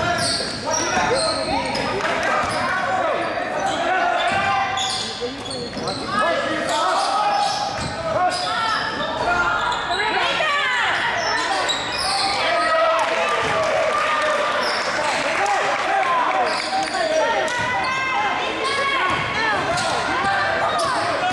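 A basketball being dribbled and bouncing on a hardwood gym floor during play, with players' and spectators' voices, all echoing in a large gym.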